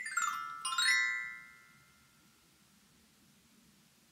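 Small xylophone struck with a mallet: a run of notes stepping down, then a faster run stepping back up, a pitch pattern going down and then up. The last notes ring on for about a second before fading.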